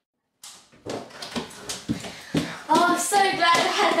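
Silent for the first half second, then a run of knocks and clattering handling noises, followed near the end by raised voices calling out.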